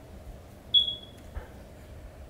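A single short high-pitched beep about three-quarters of a second in, fading within about half a second, followed by a faint click.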